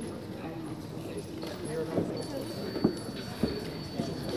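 Indistinct chatter in an echoing sports hall, with footsteps on the hard floor and a few sharp knocks about two and three seconds in.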